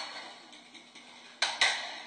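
Sharp clacks of a pistol being handled fast in a small room during a draw and reload, the loudest pair of hits about one and a half seconds in, each dying away quickly.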